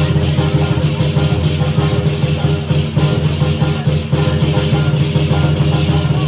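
Lion dance drumming music: a fast, continuous drum beat with dense percussion strikes.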